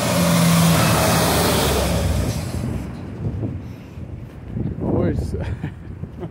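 A road vehicle passing close by: its tyre and engine noise swells at the start and fades out by about three seconds in.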